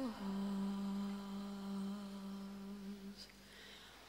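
A solo female voice, unaccompanied, hums one long low note that dips slightly at the start and is then held steady. It fades out about three seconds in.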